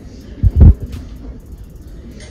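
Two low thumps in quick succession about half a second in, against faint room noise.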